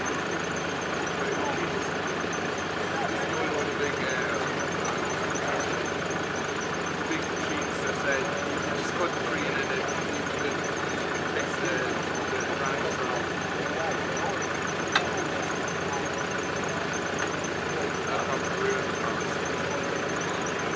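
Mini excavator's diesel engine running steadily, with people talking in the background and a single sharp knock about 15 seconds in.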